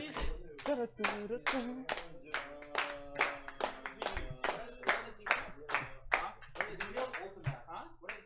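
A small group clapping together in a steady rhythm, about three to four claps a second.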